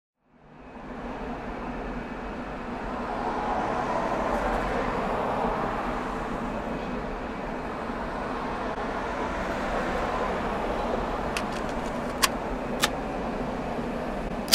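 Steady street traffic noise, fading in at the start. Near the end come three sharp clicks of a cassette being loaded into a portable Sony boombox's tape deck.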